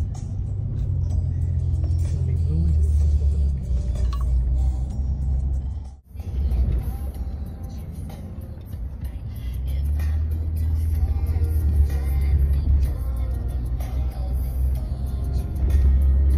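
Low, steady road rumble of a moving car heard from inside the cabin, with music over it. The sound drops out sharply for a moment about six seconds in.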